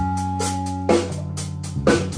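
Live band playing a slow number: electric guitars holding sustained notes over a drum kit, with two drum hits about a second apart.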